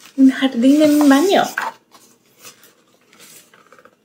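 A woman's voice in a drawn-out wordless sound for about a second and a half, its pitch wavering near the end; then faint rustles and taps as the page of a hardcover picture book is turned.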